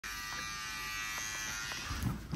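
Electric beard trimmer running with a steady, even buzz.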